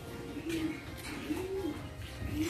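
A dove cooing in the background, two low coos about a second apart.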